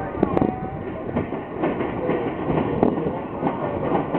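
Railroad passenger cars rolling past, wheels clicking irregularly over the rail joints under a steady rolling rumble.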